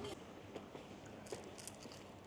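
A few faint, short clicks and light taps, about five in two seconds, over low room noise.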